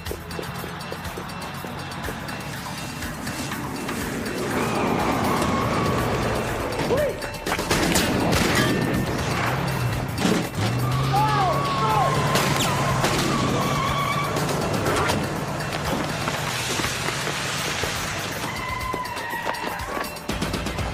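Action-scene soundtrack: music mixed with a car's engine and several sharp knocks or impacts about seven to eight seconds in.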